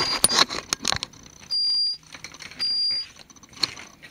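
Metal detector giving two steady high-pitched beeps, each about half a second long and about a second apart, signalling metal under the search coil. Rustling and clicking from handling come in the first second.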